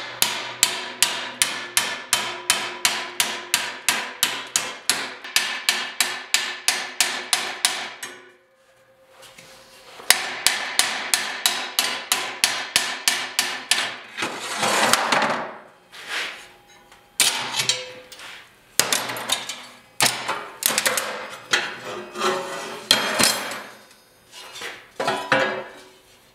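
Hammer striking steel angle iron clamped to a checker-plate step in a bench vise, beating its flange over the plate's edge, the steel ringing with each blow. A fast, even run of about three to four blows a second for some eight seconds, a pause of about two seconds, then more blows that grow slower and irregular.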